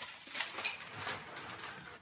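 Faint handling noise: a few light clicks and soft rustling as small plastic furniture feet are picked out and handled.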